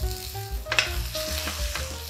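Pork strips sizzling in hot oil in a stainless steel frying pan as a metal spatula stirs them, scraping across the pan.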